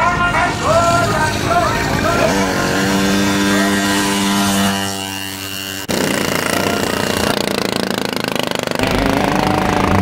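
Voices talking over background noise, then a steady drone. After an abrupt cut about six seconds in comes a loud, rough, rapidly fluttering rattle, typical of a crash car's engine running.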